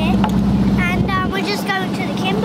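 Sailboat's inboard diesel engine running at a steady drone, with a child's voice over it.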